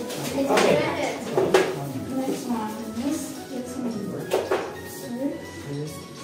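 Several people talking at once over background music, with a few sharp clicks or knocks.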